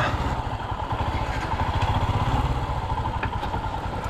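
Motorcycle engine running steadily at low speed, with an even low pulse, as the bike is ridden slowly.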